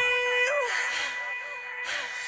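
Background music: a held chord from a rap song dying away, with a short rush of noise near the end.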